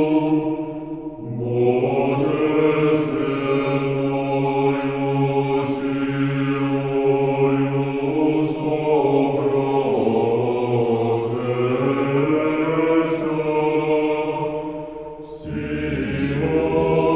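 Male choir singing Russian Orthodox sacred chant unaccompanied, the basses holding a low sustained note beneath the upper voices. One phrase closes about a second in and a new one begins; another closes and restarts near the end.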